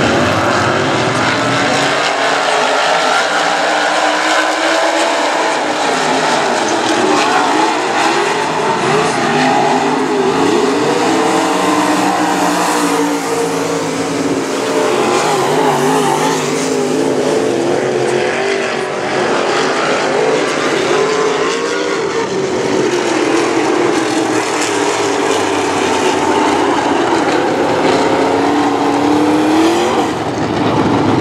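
A field of dirt-track modified race cars running together, several V8 engines at once, their pitches wavering up and down as the cars accelerate and lift through the turns.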